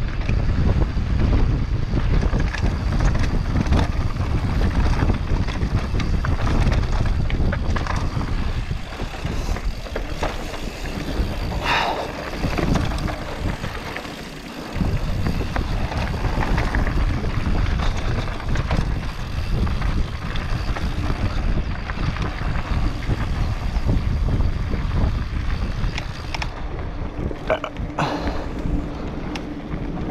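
Wind rushing over the camera microphone and the rumble and rattle of an enduro mountain bike riding down a dirt singletrack, with a few sharp knocks from the trail. The noise dips briefly about halfway through.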